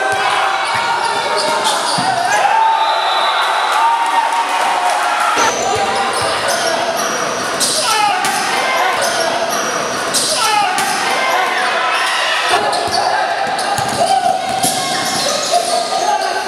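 Indoor basketball game: the ball bouncing on the court amid players' voices calling out, echoing in a large hall.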